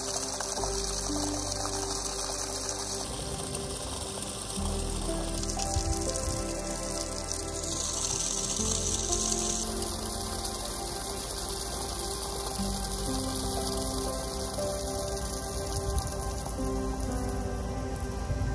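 Water gushing and splashing from the spout of a homemade PVC hand pump onto wet ground as it is worked, under background music.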